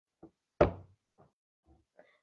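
A few short knocks: one sharp, loud knock about half a second in, with fainter knocks before and after it.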